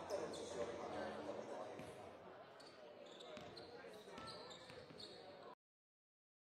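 Basketballs bouncing on a hardwood court as sharp scattered knocks, under indistinct voices echoing in a large hall. The sound cuts off suddenly about five and a half seconds in.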